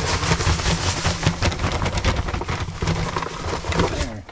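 Loose granular mineral pouring from a sack into a tyre feeder: a dense, crackly hiss of grains falling and landing. A steady low hum runs underneath.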